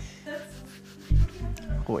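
Tense background music: a sustained low drone with a quick run of four bass thumps, like a heartbeat, about a second in.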